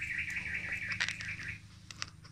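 A bird's warbling trill, one quavering phrase lasting about a second and a half, with a few sharp clicks around the middle and near the end.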